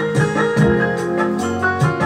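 Electronic keyboard playing an instrumental melody over held chords, with a steady beat in the accompaniment.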